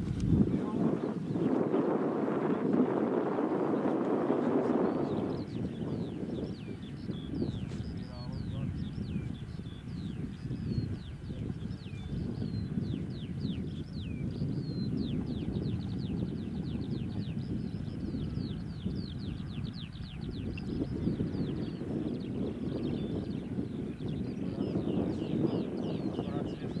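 Outdoor field ambience: wind noise on the microphone, strongest in the first five seconds, with faint, indistinct voices. From about six seconds in, a bird gives a rapid run of high, thin, downward-sliding chirps, a few each second.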